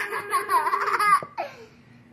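A young child laughing in a high voice for about a second, then trailing off.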